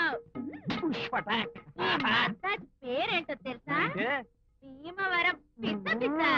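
A woman's voice talking fast in short syllables that swoop widely up and down in pitch, with a faint steady tone underneath.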